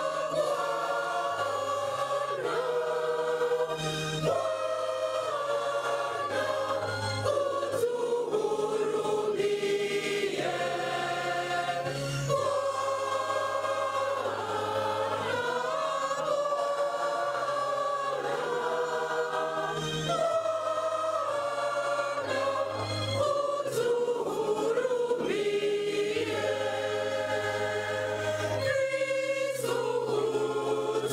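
Church choir singing a hymn in parts, with low held bass notes beneath that change in steps.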